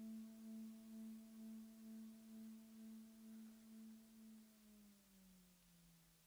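A faint, sustained low keyboard note with a steady tremolo pulse about twice a second, slowly dying away. Near the end it slides down in pitch and fades out, ending the piece.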